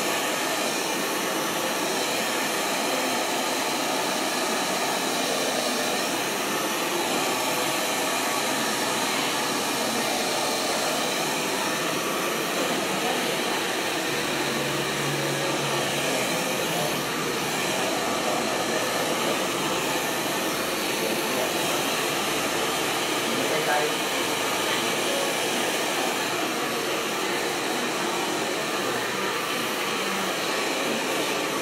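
Handheld hair dryer running steadily as hair is blow-dried: a continuous, even rush of air with a faint steady whine from its fan, unbroken throughout.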